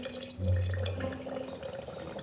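Wine trickling and dripping into glassware as it is poured and drawn off for blending, with a short low hum about half a second in.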